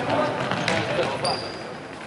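A futsal ball being kicked and bouncing on a wooden sports-hall floor, with one sharp kick about two-thirds of a second in, and players' voices in the hall.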